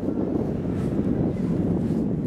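Wind buffeting the camera microphone: a steady low rumble with no distinct events.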